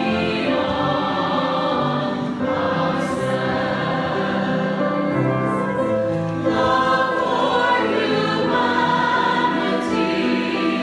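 Mixed church choir singing an anthem in parts, with a flute playing along at first.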